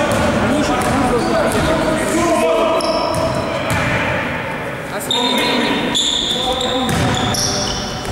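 Basketball game in a large, echoing gym: a ball bouncing on the court floor, with players' voices and shouts. From about three seconds in come repeated short, high squeaks of sneakers on the floor.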